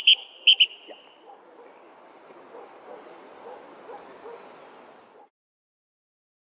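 A few short, loud, high-pitched peeps in quick succession at the start, trailing off into a fading held tone, over a faint murmur of distant voices outdoors that cuts off about five seconds in.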